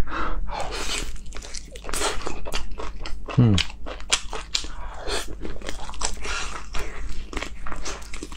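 Close-miked eating sounds: biting and chewing sauce-coated meat off the bone, with wet smacking and many small crisp clicks. A short "mm" comes about three and a half seconds in.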